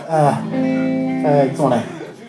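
A man's voice calling out over the PA with a held electric guitar chord ringing under it, live band sound between songs.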